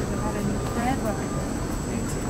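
Airport terminal hall ambience: indistinct voices of people nearby over a steady low rumble, with a thin steady high-pitched whine.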